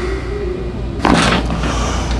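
A Y-strap neck traction adjustment. The patient hums out a slow exhale, then about a second in there is a sudden loud burst of forced breath and voice as the strap yanks his head.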